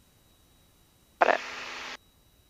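Near silence, then a short spoken "got it" over the aircraft intercom about a second in, with a steady hiss under the voice that cuts off abruptly as the voice-activated squelch closes.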